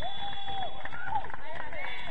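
Several men shouting and calling out across a football pitch, their voices overlapping, after a goal.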